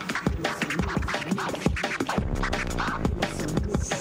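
A DJ scratching a vinyl record on a turntable over an electronic beat, with quick back-and-forth sweeps of the record.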